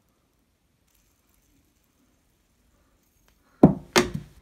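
A plastic fidget spinner thrown at a door-mounted mini basketball hoop, striking with two sharp knocks about a third of a second apart near the end, after a few quiet seconds.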